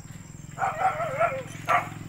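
An animal's wavering call, lasting most of a second, then a shorter call near the end, over a steady low hum.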